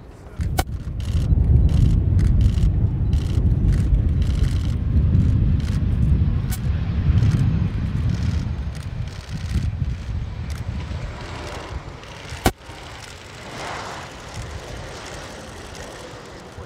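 Sukhoi Superjet 100's twin SaM146 turbofan engines rumbling as the airliner rolls along the runway, loud for the first ten seconds and then fading away. A single sharp click comes about twelve seconds in.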